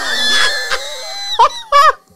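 A man's high-pitched squealing laugh: one long held squeal, then a few short shrieks near the end.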